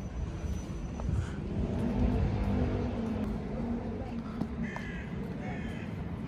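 City street ambience: a steady low traffic rumble, with a pitched engine-like drone for about two seconds in the middle and a few short high calls near the end.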